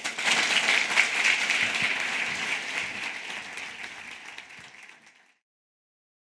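Audience applauding after a talk, loudest in the first two seconds, then fading steadily until it cuts off about five seconds in.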